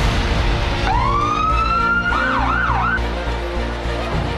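Fire department pickup truck's siren giving a short burst: a rising wail about a second in, held briefly, then a quick warble of three or four up-and-down sweeps that cuts off about three seconds in. Music plays underneath.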